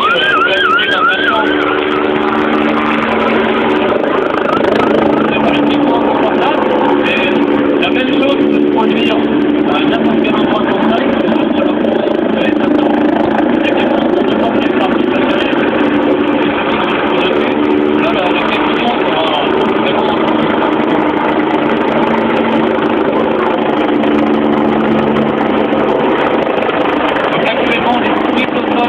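Dragon 38, a Sécurité Civile EC145 rescue helicopter, flying low overhead: a loud, steady hum made of several tones that drift slightly in pitch as it moves about. Voices can be heard under it.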